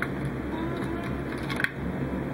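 Steady low mechanical hum of a room fan, with two faint clicks, one right at the start and one about one and a half seconds in.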